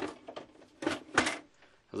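Plastic housing clicks and knocks as the scanner unit of an Epson Stylus SX130 all-in-one is lowered and seated on the printer body: a few light knocks, then two sharper ones about a second in.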